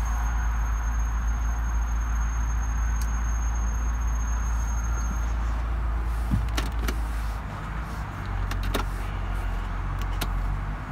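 A steady low rumble of the 2007 BMW X5 idling, heard from inside the cabin, with a few sharp clicks in the second half as the centre console and gear selector are handled.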